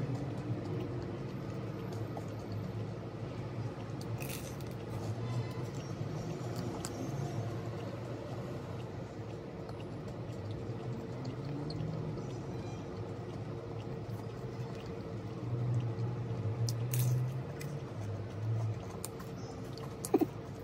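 Close-up chewing of a crispy turon (fried banana spring roll): wet, squishy mouth sounds with a few crunchy bites and clicks.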